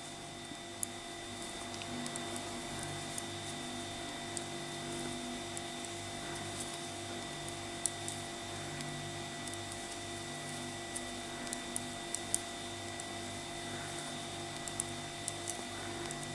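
Occasional faint clicks and taps of metal knitting needles as stitches are knitted, over a steady electrical hum.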